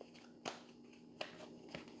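Faint clicks and rustles of a tarot deck being handled as a clarifier card is drawn: a few separate light clicks over a low steady hum.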